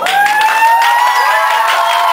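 Audience applauding at the end of a song, with a long drawn-out cheer over the clapping.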